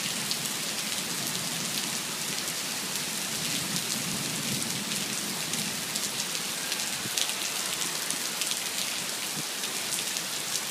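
Heavy rain pouring down onto pavement and parked cars: a steady dense hiss with countless small spattering drops.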